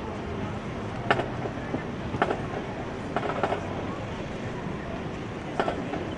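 Marching band drumline keeping time as the band marches, a sharp tap or click roughly once a second, over a steady background of crowd and outdoor noise.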